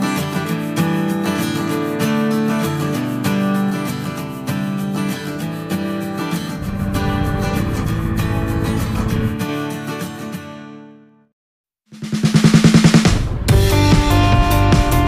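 Background music with drums and a steady beat that fades out about three-quarters of the way through; after a brief silence, a quick drum roll leads into a new track near the end.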